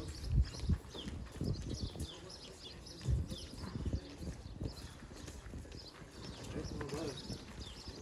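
Footsteps of several people walking on a gravel street, an irregular run of soft thuds, with faint voices in the background.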